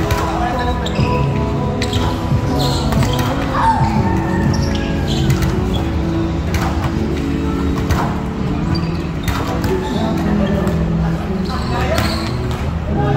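Volleyball rally in a large echoing hall: the ball is struck with sharp slaps every second or two, players call out, and background music plays.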